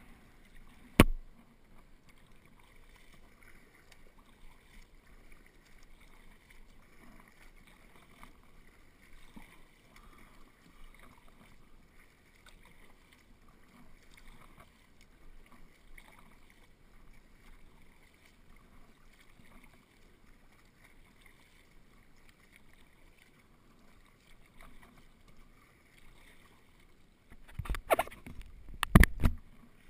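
Faint water sounds of a surfski being paddled: the paddle blades dipping and water running along the hull. There is one sharp knock about a second in and a cluster of knocks at the very end.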